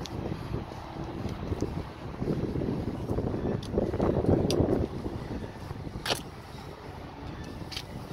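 Wind buffeting the microphone: an uneven low rumble that swells in the middle, with a few faint clicks.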